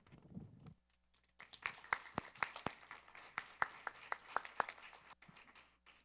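Light, scattered applause from an audience: a few hands clapping irregularly, starting about a second and a half in and dying away near the end.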